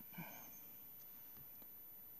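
Near silence: room tone, with one faint short sound just after the start and a few very faint ticks.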